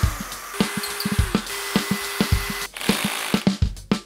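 Background music with a steady drum beat, over which a Bosch Professional cordless drill-driver runs briefly, driving in a screw.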